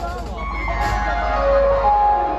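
Loud procession music over loudspeakers: a held electronic melody whose notes slide downward, over a steady bass beat, with crowd voices underneath.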